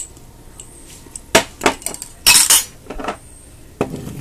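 Kitchenware being handled: a few sharp clinks and knocks of dishes and glass, with a longer clattering rattle in the middle.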